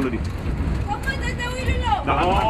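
Low, steady diesel engine rumble inside a bus as it is towed through a flooded river. Over the second half a person's voice calls out in one drawn-out call.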